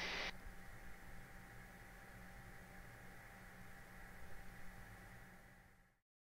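Faint, steady hum and hiss of jet cockpit background audio in cruise. A louder hiss cuts off a moment in, and the sound fades to silence just before the end.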